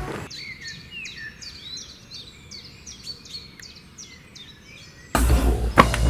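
Birds chirping: a quick string of short, downward-sweeping high chirps over faint background hiss. Loud music with a heavy bass comes in suddenly about five seconds in.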